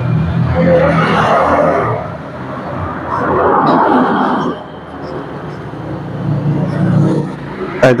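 A motor vehicle engine running with a steady low note, its sound swelling up and easing off about three times.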